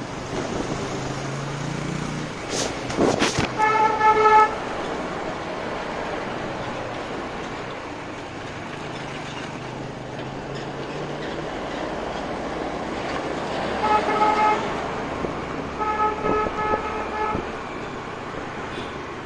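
Riding a scooter, with a steady rush of wind and road noise; a vehicle horn beeps about four seconds in and sounds again in short toots near the end. A few sharp knocks come just before the first horn.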